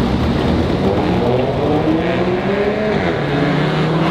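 Cars racing flat out down a street, engines rising in pitch under full throttle, with a drop in pitch about three seconds in as one shifts up.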